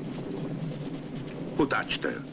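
A steady low rumble, with a short, loud vocal cry that glides in pitch about one and a half seconds in.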